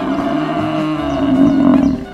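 A bull mooing: one long call that holds for nearly two seconds and breaks off at the end.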